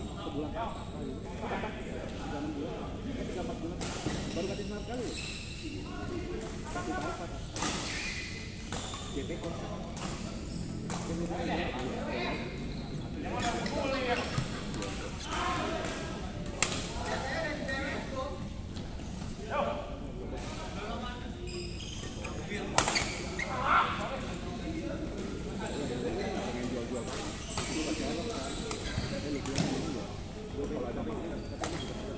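Badminton rackets striking a shuttlecock: sharp, irregular hits during rallies, the loudest about 17 and 23 s in, over a steady murmur of voices echoing in a large indoor hall.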